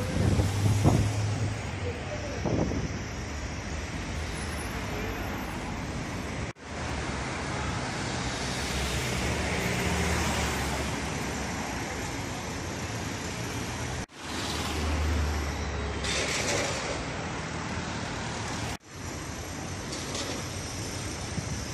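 City street traffic: a steady wash of car engines and tyres with passing vehicles, the sound cutting out abruptly and fading back three times.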